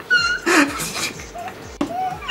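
A woman's short, high-pitched squeal of laughter, followed by bursts of laughing.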